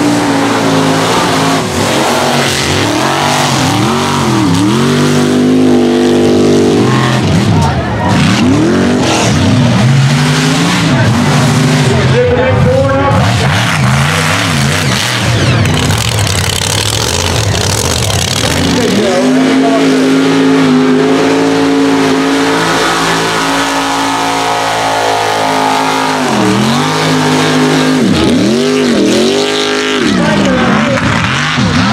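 Mega mud truck engines running loud at full throttle, their pitch climbing and dropping over and over as the drivers get on and off the throttle through the mud pits.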